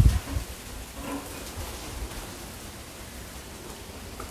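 Quiet outdoor background: a steady, even hiss with no distinct event, and a faint voice about a second in.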